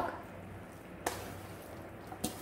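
Wet blanched sea mustard and peach strips scraped from a metal bowl into a glass bowl of cold broth, faint, with a single sharp click about a second in.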